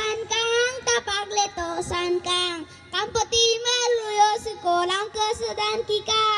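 A child singing into a microphone, a simple melody in held notes with a short break about two and a half seconds in.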